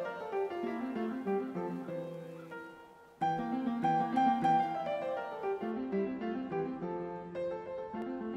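Background music: a gentle melody of plucked acoustic guitar with piano. About three seconds in the music fades briefly and then starts again abruptly.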